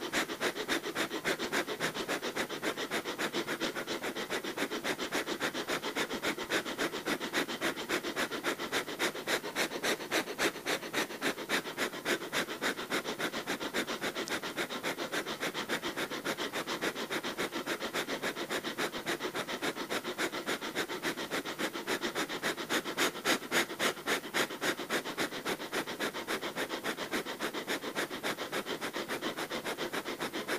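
Breath of fire, the Kundalini yoga fire breathing: rapid, forceful, evenly paced breaths through the nose, about two to three a second, kept up steadily without a break.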